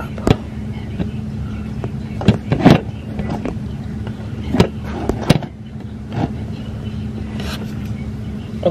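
Knocks and rubbing from a handheld phone camera being gripped and moved, a few irregular sharp taps with the loudest about two and a half seconds in, over a steady low hum.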